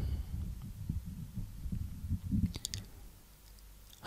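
Faint, irregular low thumps close to the microphone, then a single sharp click about two and a half seconds in, in a quiet pause between spoken lines.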